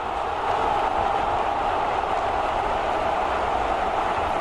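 Football stadium crowd cheering the home side's goal: a steady wall of voices that swells slightly about half a second in.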